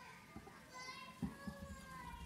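Faint high-pitched voice of a young child in the congregation, with a few low thumps, loudest a little past a second in, as people get to their feet.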